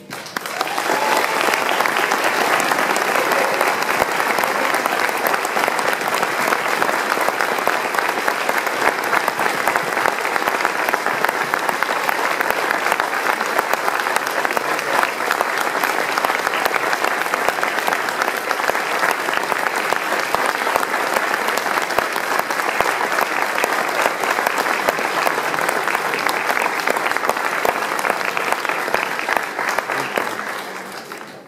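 Audience clapping in a school auditorium, a steady dense applause that begins as the band's final chord cuts off and thins out near the end.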